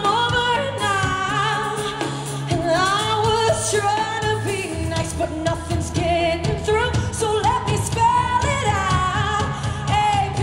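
Female lead vocalist singing live over a pop-rock band, holding long notes with a wide vibrato above the bass and drums.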